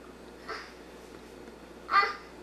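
A toddler's short vocal sounds: a faint one about half a second in, then a louder, higher-pitched squeal near the end, over a steady background hiss.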